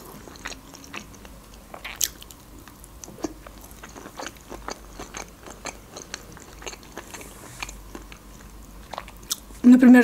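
Close-miked chewing of grilled food: a string of soft wet smacks and small mouth clicks, with one sharper click about two seconds in.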